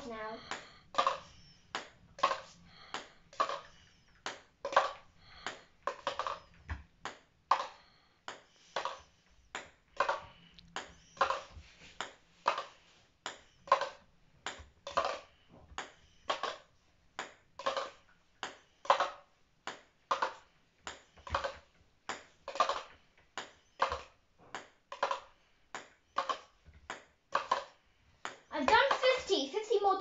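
A ping pong ball is bounced over and over and caught in a handheld cup, making a steady run of light clicks, about two a second.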